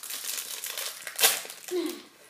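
Small clear plastic bag of Lego pieces crinkling as it is handled and pulled open, with one sharp, louder crackle a little over a second in.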